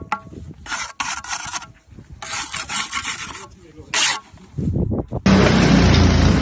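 A steel brick trowel gives one light tap on a freshly laid brick, then makes three scraping strokes across the brick and its mortar joint, striking off the excess mortar. Near the end, a tracked mini dumper's engine comes in loudly and runs steadily.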